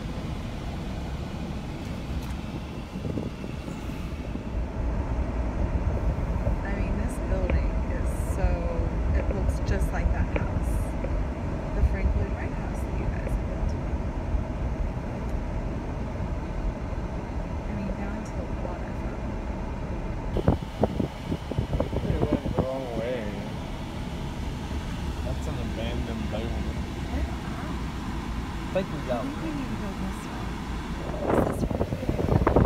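Car driving slowly, heard from inside the cabin: steady low road and engine rumble, with faint muffled talking at times and a couple of brief knocks about two-thirds of the way through.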